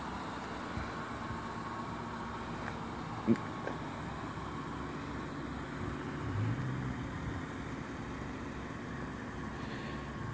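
Steady background hum of motor vehicles, with a brief knock about three seconds in.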